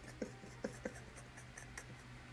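A few faint, short stifled giggles from a woman laughing behind her hand, over a low steady room hum.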